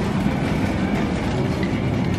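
Metal shopping cart rolling across a store floor, its wheels and wire basket giving a steady rattling rumble.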